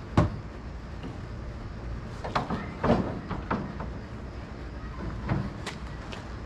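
Metal knocks and clunks as the Nissan 240SX's steel rear hatch with its glass is handled and set onto the car's body shell. A sharp knock comes right at the start, then lighter scattered knocks follow.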